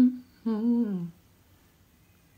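A woman humming: a short voiced sound at the very start, then a hummed "mmm" from about half a second in, its pitch wavering and then falling, ending just after a second.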